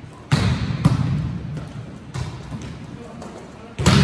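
Volleyball hits ringing in a gym, with players' voices: a sharp hit about a third of a second in, a few lighter hits over the next two seconds, and a loud hit just before the end.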